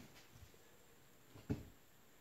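Near silence: faint room tone, with one brief soft thump about one and a half seconds in.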